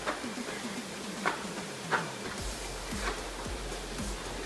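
Soft thuds of feet and hands landing on a carpeted floor during a stretch-and-squat bodyweight exercise: a few separate knocks, the clearest about a second and about two seconds in, over faint background music.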